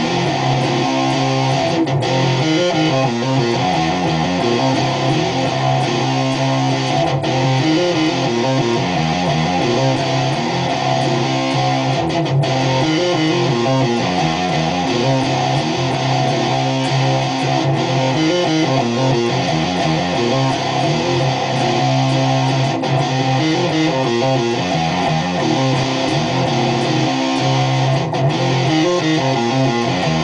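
Charvel electric guitar playing a heavy stoner-rock riff, repeated over and over. Each pass ends in a brief break, about every five seconds.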